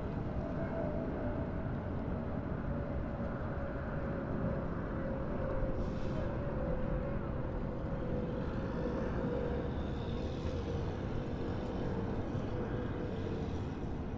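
An engine running steadily: a constant drone that sinks slowly in pitch, over a heavy low rumble.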